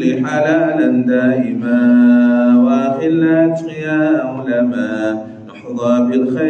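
A man's voice chanting in a melodic recitation style, holding long, steady notes with a short pause shortly before the end.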